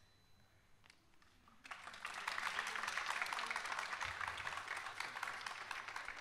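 An audience clapping, starting a little under two seconds in and going on steadily for several seconds.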